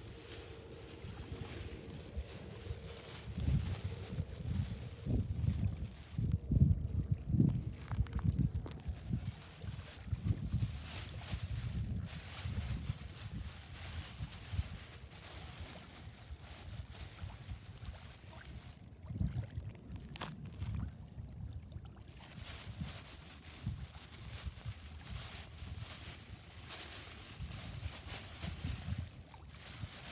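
Wind buffeting the microphone in uneven gusts, loudest about six to eight seconds in, with a faint steady hum under it for the first nine seconds or so.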